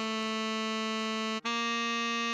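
Synthesized tenor saxophone playing a slow melody. A held note (written B) is followed, about one and a half seconds in, by a brief break and the next note a half step higher (written C). A fainter lower held note sounds beneath it.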